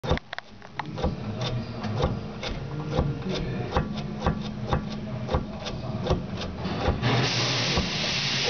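Loose upper control arm bushing in a 2001 Jaguar XK8's left front suspension clunking repeatedly, a few sharp knocks a second, as the arm is worked back and forth. This play in the worn bushing is what causes the clunk over bumps. A steady low hum runs underneath, and a loud hiss starts about seven seconds in.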